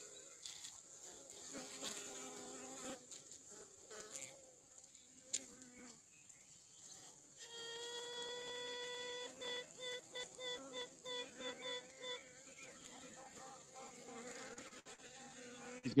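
Honey bee colony buzzing on the comb, then a virgin queen tooting about halfway through: one long pitched note of about a second and a half, followed by a train of short toots at about three a second that fades out.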